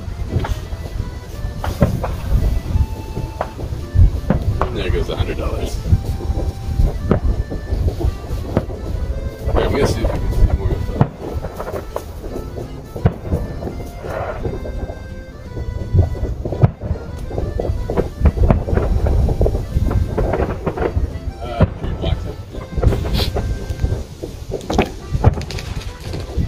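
Aerial fireworks shells bursting one after another in a dense barrage of deep booms and bangs, with hardly a pause between them.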